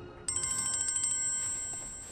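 Mobile phone ringtone: a high, rapidly pulsing electronic ring that starts suddenly about a quarter second in and keeps ringing. Just before it, a soft music cue fades out.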